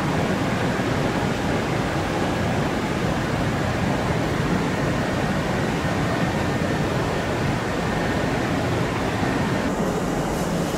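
Steady noise of a Kintetsu 2800-series electric train standing at an enclosed station platform, its onboard equipment running, with an even rumble and hiss and no distinct knocks or announcements.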